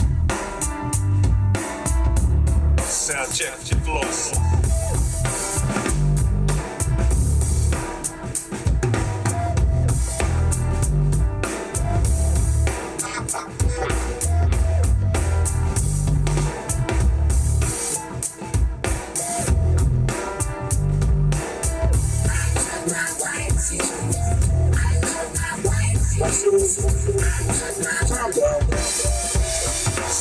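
Drum kit performance played back through an OEPLAY hi-fi Bluetooth speaker at loud volume, with heavy kick-drum thumps from its woofer under fast snare and cymbal hits.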